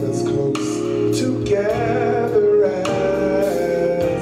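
A man singing a slow inspirational song into a microphone over instrumental accompaniment, holding long, wavering notes in the second half.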